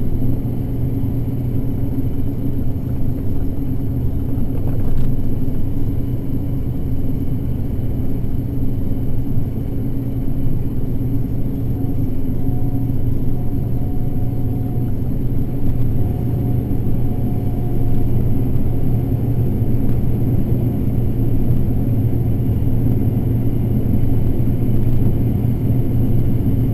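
Combine harvester running while shelling corn, a steady low drone of engine and threshing machinery heard from inside the cab. A faint thin whine comes in for a few seconds about halfway through.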